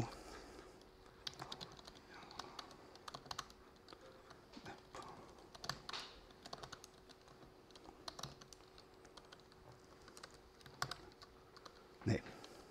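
Faint, irregular typing on a laptop keyboard: single keystrokes and short runs of clicks as shell commands are entered.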